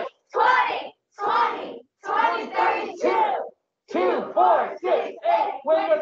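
A college cheer chanted and shouted by adult and child voices together over a video call, in separate loud syllables that come slowly at first and quicker in the second half.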